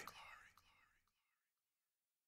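Near silence at the end of a track: a faint trailing voice from the spoken outro dies away within the first half second, then nothing.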